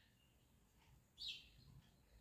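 Near silence with one short, high-pitched chirp of a bird's call just over a second in.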